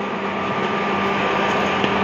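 Steady mechanical hum with a constant low tone and an even noise underneath, level throughout.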